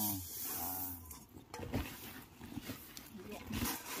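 A low, drawn-out voice for about the first second, then rustling and light clicking as woven plastic sacks are handled and threshed rice grain is poured into them from a metal basin.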